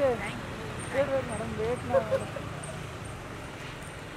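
Steady low street-traffic hum, with a few short calls from people's voices in the first two seconds.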